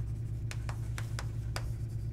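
Chalk writing on a blackboard: a quick, irregular series of short taps and scratches, about seven strokes, as words are chalked out. A steady low hum runs underneath.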